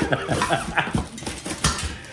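A man laughing hard in a string of short, high bursts.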